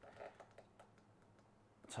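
Near silence: room tone, with a few faint light clicks in the first half second.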